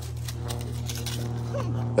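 A steady low mechanical hum runs throughout, with soft crunches of small footsteps in dry leaves and a brief child's vocal sound near the end.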